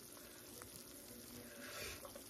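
Faint sizzle of shredded cheddar cheese starting to melt in a skillet.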